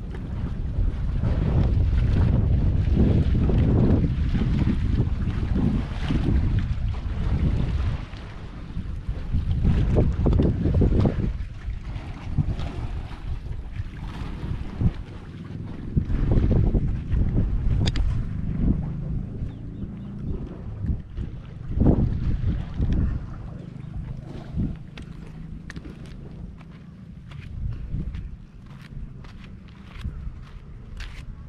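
Wind buffeting the camera microphone in gusts, a low rumble that is strongest in the first half and eases toward the end, with a few faint clicks near the end.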